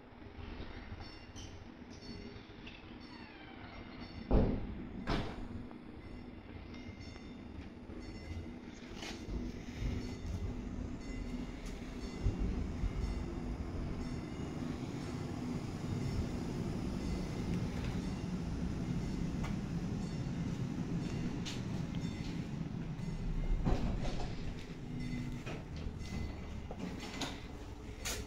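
Electric tram approaching at low speed and drawing in alongside the platform, its running noise on the rails and its motor hum growing steadily louder as it comes close. There is a single sharp knock about four seconds in, and smaller clicks from the wheels along the track.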